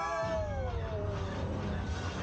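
A high-pitched cry that slides down in pitch over about a second and a half, over a steady low rumble.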